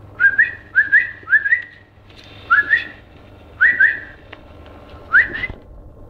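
A person whistling to call a puppy: short rising whistled notes in pairs, repeated about six times with gaps between.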